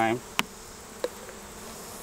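Honeybees buzzing steadily around an open hive, with two sharp clicks, the first just after the start and the second about a second in.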